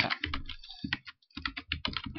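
Typing on a computer keyboard: a quick run of key clicks, with a short pause about a second in.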